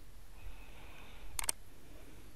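Two quick computer mouse clicks close together about a second and a half in, over faint room noise.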